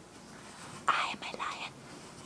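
A person whispering a few words, starting about a second in.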